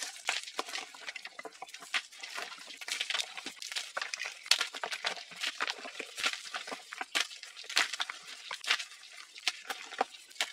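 Dyed, reformed gym chalk blocks being crushed and crumbled by hand: a dense, irregular run of dry crunches and crackles as the blocks break and the crumbled powder is squeezed.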